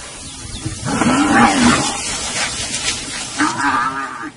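Cape buffalo calling: one long, low call starting about a second in, then a shorter call near the end.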